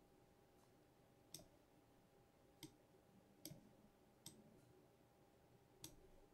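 Faint computer mouse clicks: about five single, unevenly spaced clicks over near-silent room tone with a faint steady hum.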